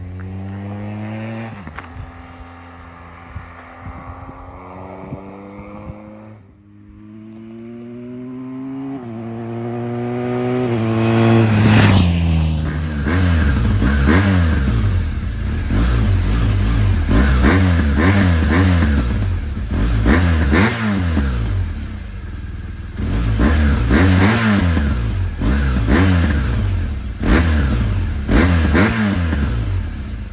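BMW R1200R flat-twin boxer engine accelerating through the gears, its pitch climbing and then dropping back at each of several upshifts. Then, close to the stock exhaust, it is blipped again and again from idle, the revs rising and falling sharply.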